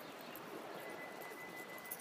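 Faint steady outdoor background noise, with a thin high steady tone coming in about a second in.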